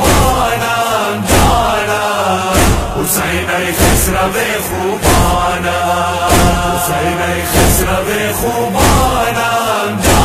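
Male voices chanting a Persian noha, a Shia lament for Hussain, together in a slow refrain, with a heavy thump about every second and a quarter keeping the beat.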